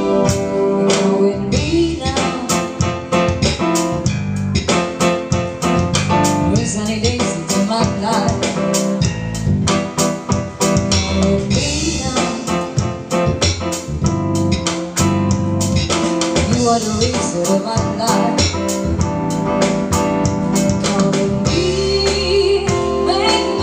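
A band playing a rock song: a drum kit keeping a steady beat under guitar and keyboard.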